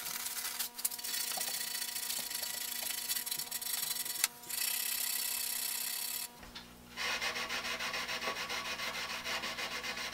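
Steel wool rubbed over the varnished wood of a quilt rack, stripping the old varnish: a steady scrubbing that stops briefly a little past halfway, then comes back as quick back-and-forth strokes.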